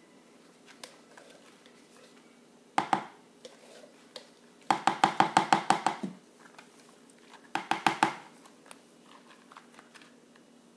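Spatula knocking rapidly against the rim of a plastic mixing bowl of soap batter, in three bursts: a couple of knocks near the start, a quick run of about a dozen in the middle, then about half a dozen more.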